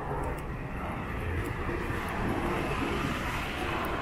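A small white kei truck drives past close by. Its engine and tyre noise swell to a peak about two to three seconds in, then begin to fade.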